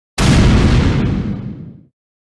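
An explosion-like boom sound effect: a sudden loud burst that starts a moment in, fades over about a second and a half, then cuts off.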